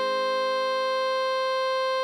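Alto sax melody note, written A5 (concert C), held steady as one long note over a sustained A-flat major chord.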